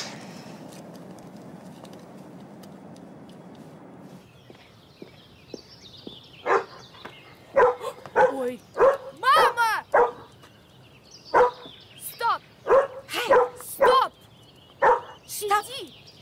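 A dog barking repeatedly in short, loud, irregular barks, starting about six seconds in after a few seconds of steady background hiss.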